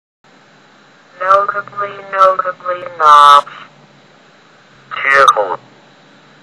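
A computer text-to-speech voice reading dictionary entries aloud word by word, English words and their Chinese meanings, in two short spoken groups with a faint steady hiss between them.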